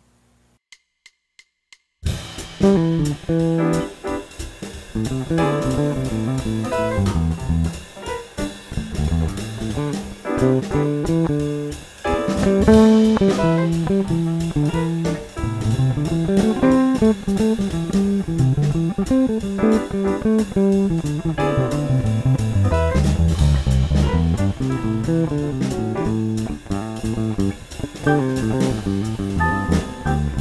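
Electric bass played fingerstyle, improvising on the C major pentatonic scale over a C major seventh chord, with a drum backing groove. After a short silence, four quick count-in clicks come about a second in, and the groove starts at about two seconds.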